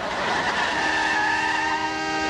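Car tyres screeching as a cab skids to a hard stop: a harsh rush at first that settles into a steady, high squeal.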